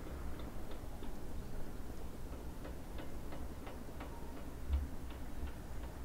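Light, irregular clicks, a dozen or so, coming more often in the second half, over a low steady rumble.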